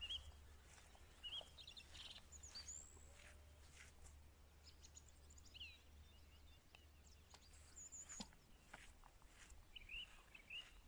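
Near silence outdoors, with faint scattered birdsong: short high chirps and little rising and falling whistles, over a steady low hum.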